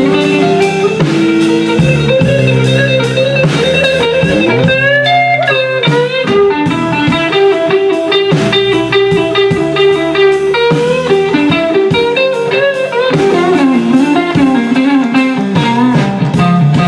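Live electric blues guitar solo with sustained, bent notes, a long upward bend about five seconds in, over a steady drum beat and bass from a trio.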